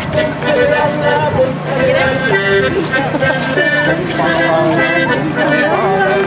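Live folk dance music with a steady beat, played by musicians for a ring dance, with the voices of dancers and onlookers mixed in.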